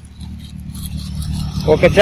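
A motor vehicle's engine running close by, a steady low hum that grows louder, with a man starting to talk near the end.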